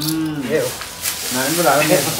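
A man's short spoken exclamations, two bursts of voice about a second apart, over a steady hiss.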